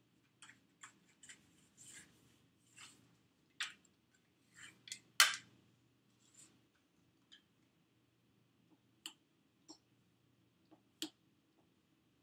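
Scattered light clicks and taps of fondant work on a cake: a plastic fondant smoother moving against the cake and its stand, then one sharp knock about five seconds in as the smoother is set down on the granite counter. A few faint clicks follow as the excess fondant is trimmed with a knife.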